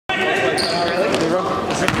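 A basketball bouncing on a hardwood gym floor among players' voices, with the echo of a large hall.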